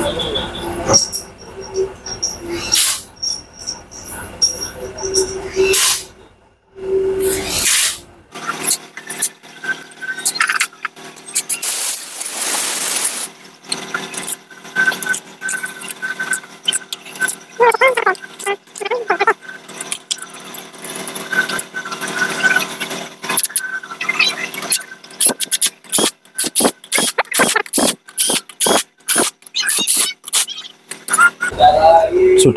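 Metal clinks and taps of tools and engine parts being handled as the main bearing caps are fitted onto a Mitsubishi L300 diesel engine block, with a brief squeak about two-thirds of the way in.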